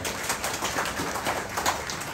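Audience clapping: a short round of applause made up of many quick, irregular hand claps.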